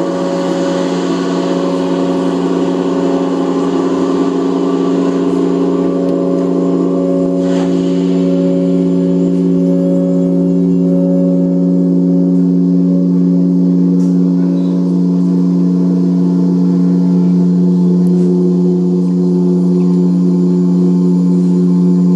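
Live experimental drone music: a dense, sustained low chord of steady held tones that swells slowly in loudness, with a higher tone wavering in a slow pulse through the middle.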